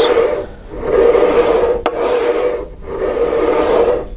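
Flexo plate cutter's blade head sliding along the cutter bar, scoring a flexographic plate in three light strokes, with a sharp click about two seconds in. This is the first cut that takes most of the waste off the plate's edge.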